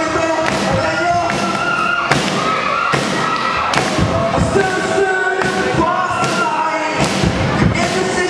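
Rock band playing live: electric guitar, bass and drum kit with frequent hard drum hits, and a singer on the microphone over them.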